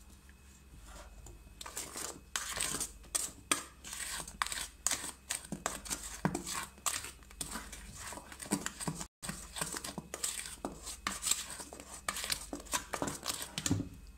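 Silicone spatula stirring flour into wet cake batter in a stainless steel bowl: irregular scrapes against the bowl's side and soft sloshing strokes, starting a second or two in and going on without a regular rhythm.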